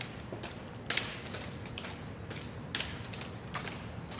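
Drill rifles handled in a silent exhibition drill: sharp slaps of hands striking the rifles and metallic clicks and rattles of their parts, a handful of separate strikes at uneven spacing, the loudest about a second in.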